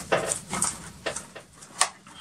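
Cardboard and paper packaging being handled by hand: a handful of short clicks and light rustles, irregularly spaced.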